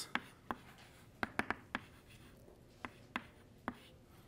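Chalk tapping and scratching on a blackboard as symbols are written: about nine short, sharp taps at irregular intervals.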